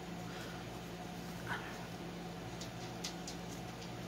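Faint steady hum of a room air conditioner, with a few soft ticks of a needle and floss being pulled through cross-stitch fabric about three seconds in. A short, high rising squeak, the loudest moment, comes about a second and a half in.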